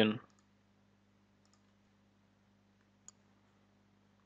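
A few faint, sharp mouse clicks over near silence, after a voice trails off at the very start.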